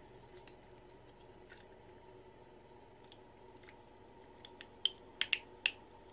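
Small plastic clicks and snaps of a Transformers action figure's parts being moved and tabbed into place while it is transformed, a few scattered at first and several sharper clicks near the end.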